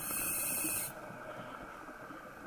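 Scuba regulator hissing for about a second as the diver breathes in, then cutting off sharply, leaving a faint underwater background.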